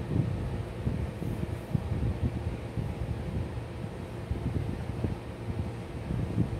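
Steady low rumble of room noise with many irregular low thumps.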